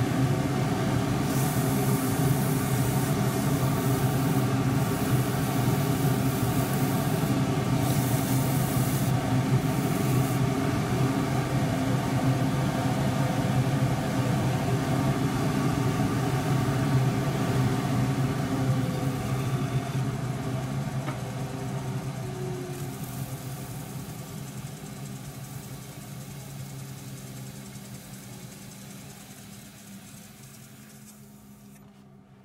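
Wood lathe running with a steady motor hum, the spinning bowl being hand sanded: several short bursts of sandpaper hiss in the first ten seconds. The hum grows steadily quieter over the last dozen seconds.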